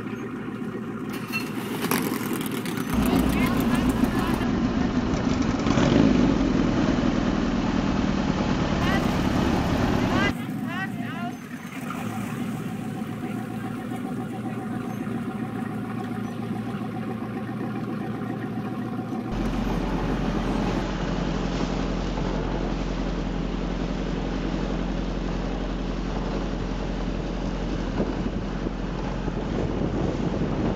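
Albatross runabout's Coventry Climax engine with twin Weber carburettors running, heard over several cuts: louder for a stretch in the first third, then from about two-thirds through a steady deep rumble under wind on the microphone as the boat runs at speed.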